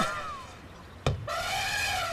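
Cartoon soundtrack: a short knock about a second in, followed by a steady held brass-like note.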